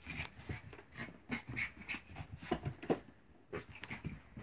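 Small dog panting in quick, irregular breaths while it plays.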